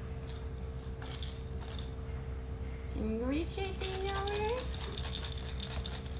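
A small plastic baby rattle shaken in short spells, rattling a little after the start, about a second in, and again through the second half. A brief drawn-out vocal sound with rising pitch comes about halfway through.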